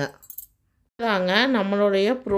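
A woman speaking, cut off just after the start, with about half a second of dead silence before her voice comes back about a second in.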